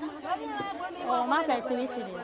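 People talking at a market stall: speech and chatter that the recogniser left unwritten, with no other distinct sound.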